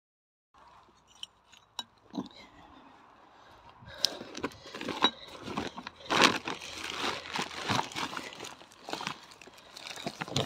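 Plastic shopping bag crinkling and rustling as it is handled and opened, starting faintly and growing busier about four seconds in, after a few light clicks.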